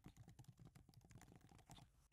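Very faint rapid typing on a computer keyboard: a quick run of light keystroke clicks.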